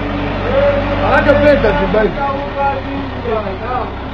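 Voices talking over a low, steady hum that drops away about two seconds in.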